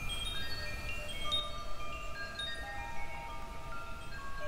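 Wind chimes ringing: many short, clear notes at scattered pitches, struck at random and overlapping, over a low rumble.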